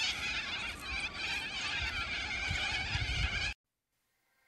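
A large flock of white birds calling in flight, a dense chorus of many overlapping cries that cuts off suddenly about three and a half seconds in.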